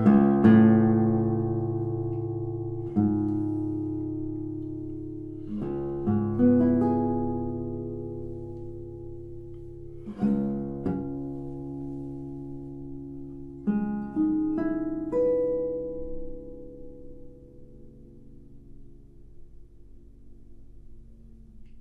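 Seven-string classical guitar playing slow, sparse chords a few seconds apart, each struck and left to ring and die away. The last chords fade out over the final few seconds.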